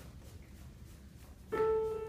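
A single piano note struck about one and a half seconds in and left ringing: the starting pitch given to the choir before they sing.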